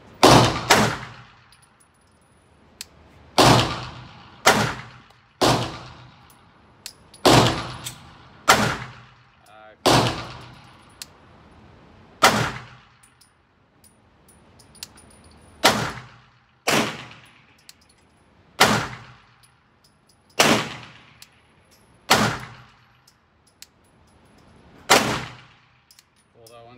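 Shots from a 9mm CZ P07 pistol, about fifteen of them fired at an irregular, deliberate pace, one to three seconds apart. Each sharp report echoes briefly off the walls of an indoor range.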